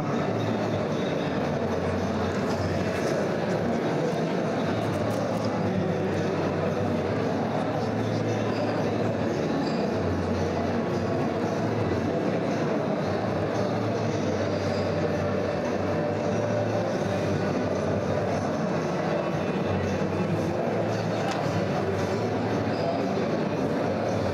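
Vema electric citrus juicer running with a steady low motor hum as orange halves are pressed onto its reamer for fresh juice.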